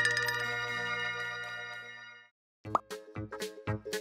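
Background music with sustained ringing chimes fading out, a brief silence, then a short pop-like sound effect and a new bouncy tune with a steady beat starting near the end.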